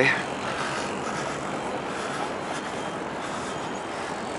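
Steady outdoor background noise: an even hiss with no distinct events, such as open-air city ambience picked up by a handheld camera's microphone while walking.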